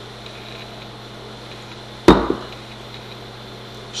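A single sharp knock about halfway through, over a low steady hum.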